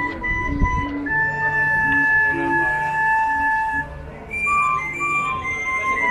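Mexican street barrel organ (organillo) playing a tune in long held, flute-like pipe notes over lower bass notes, with a short break about four seconds in. Crowd chatter underneath.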